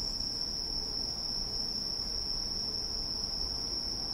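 Night insects, crickets by their sound, trilling steadily in one continuous high note, over a faint low background rumble.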